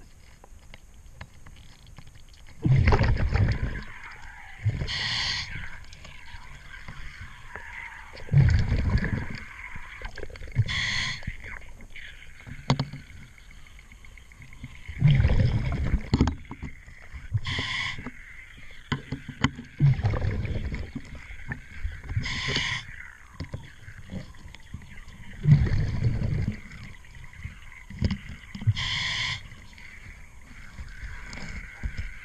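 Scuba diver breathing through a regulator underwater: a bubbling exhale about every six seconds, each followed a couple of seconds later by a short hissing inhale. A few faint clicks come in between.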